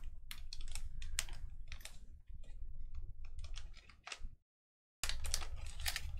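Typing on a computer keyboard: irregular, quick keystroke clicks over a low steady hum. The sound cuts out completely for about half a second a little over four seconds in.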